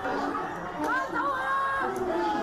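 Several people shouting over one another. About a second in, one high voice cries out, rising and then holding the cry for nearly a second.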